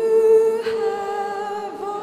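A woman singing a long held note into a microphone in a slow worship song, with a softer sustained note beneath it; the pitch shifts briefly near the end.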